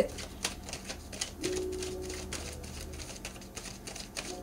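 A quick, irregular series of light clicks, several a second, over a faint low hum.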